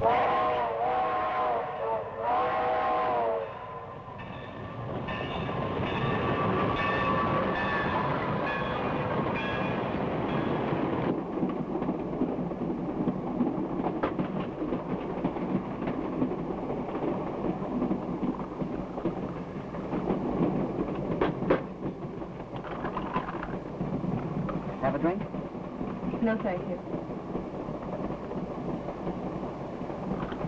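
Train whistle blowing two short blasts, then the steady rumble and rhythmic clatter of a train running along the track.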